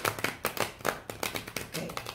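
A deck of tarot cards being riffle-shuffled by hand: a rapid run of crisp clicks as the card edges flick together.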